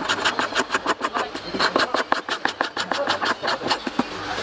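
Sandpaper rubbed fast back and forth over the wooden joint of a cricket bat's handle and blade, making a quick, even rhythm of scratchy strokes, about eight to ten a second, with a brief pause a little over a second in.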